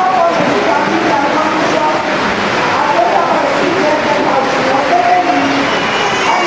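A person talking over a steady hiss of room noise; the words are not picked up as English.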